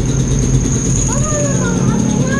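Small motorcycle engine idling steadily, just started and warming up, with a steady high-pitched whine over it.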